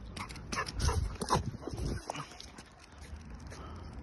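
Golden retriever puppy giving a few short barks in quick succession during the first two seconds, then going quiet.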